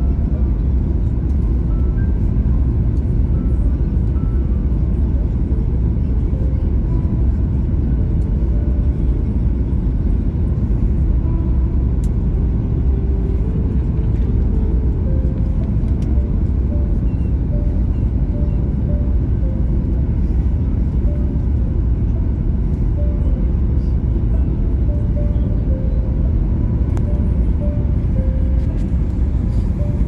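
Steady low cabin rumble of a Boeing 737-8 in descent on approach: its CFM LEAP-1B engines and airflow heard from inside the cabin, holding an even level throughout.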